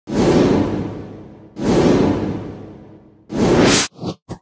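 Three whoosh sound effects from an animated logo intro. The first two start suddenly and fade away slowly. The third swells and cuts off abruptly near the end.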